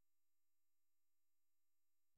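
Near silence: a digital noise floor with faint steady tones.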